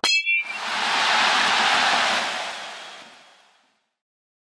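An edited-in transition sound effect: a bright metallic ding right at the start, then a soft airy swell that rises and fades away over about three seconds, ending in silence.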